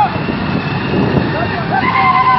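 A group of motorbikes and scooters riding together, engines and wind rumbling on the microphone. Long high-pitched tones ring out over the rumble right at the start and again near the end.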